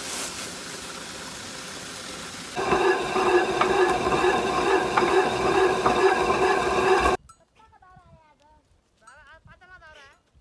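A turning millstone grinding grain fed from a wooden hopper: a steady rumble that grows much louder a few seconds in, with a steady hum and occasional clicks. It cuts off suddenly and goats bleat several times near the end.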